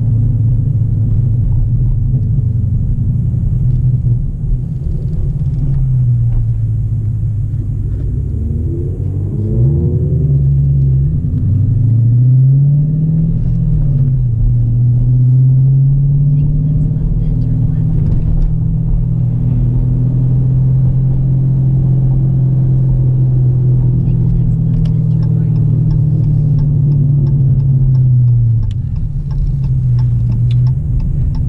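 Car engine heard from inside the cabin, its pitch dipping and climbing as the car slows and speeds up, with a sharp climb and drop about ten seconds in. A regular ticking comes in near the end.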